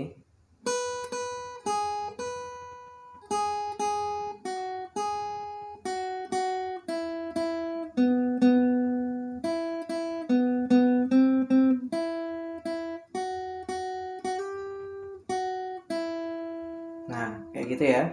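Steel-string acoustic guitar picked with a plectrum, playing a single-note melody one note at a time, with many notes struck twice in quick succession. A man's voice comes in near the end.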